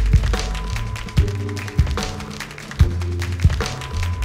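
Live instrumental hip hop: an acoustic drum kit plays a laid-back beat with sharp snare and kick hits under an amplified electric bass line of long, deep notes, with sampled sounds from an Akai MPC Live 2 layered in.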